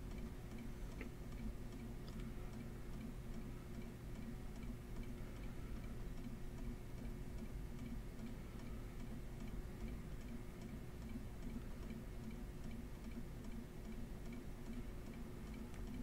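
Faint, regular ticking over a steady low hum in a quiet room.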